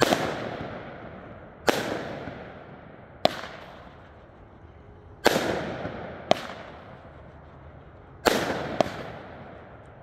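A 200 g consumer firework cake firing shot after shot: about seven loud bangs, one every one to three seconds, several of them trailing off over a second or two.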